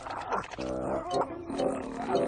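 A cartoon dachshund making excited, muffled vocal grunts with a bagged toy held in its mouth, over background music, in a few drawn-out stretches.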